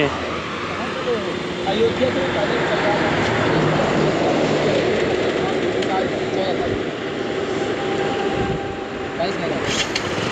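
Rushing wind noise on the microphone, with a motorcycle running slowly underneath. The noise swells a few seconds in and eases toward the end, with faint voices under it.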